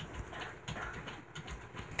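Faint scattered clicks, taps and rustles of small plastic toy figures and the camera being handled and moved about.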